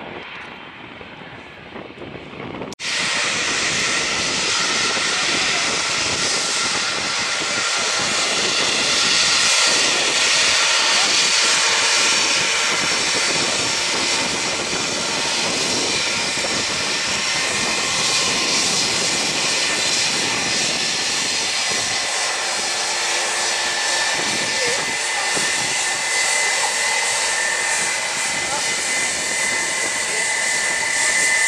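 Airbus A321's jet engines running at taxi power as the airliner rolls slowly past close by: a loud, steady rushing noise with a high, held whine. About three seconds in, the sound jumps abruptly from a quieter, more distant level to the full close-up level.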